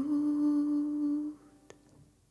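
A woman's voice holding one long, steady note that fades out about a second and a half in, closing the song; a faint click follows near the end.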